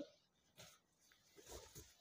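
Near silence: room tone, with a few faint, soft rustles about half a second in and again around a second and a half in, from a silk saree being handled.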